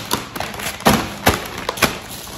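Thumps and taps of cardboard boxes and packages being handled and set down: about five separate knocks, the loudest about a second in.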